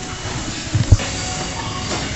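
Steady gym room noise, with one heavy thump just under a second in.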